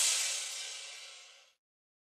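A break in a hip-hop track: a single cymbal-like crash rings out and fades away over about a second and a half, then the track drops to complete silence.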